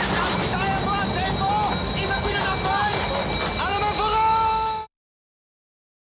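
Men shouting inside a submarine over a loud, dense mechanical din, from a war-film soundtrack. A long held shout comes near the end, then all sound cuts off abruptly at about five seconds, leaving silence.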